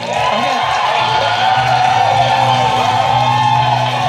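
Game-show music with a steady beat under a studio audience cheering and whooping, many voices held together on a long shout.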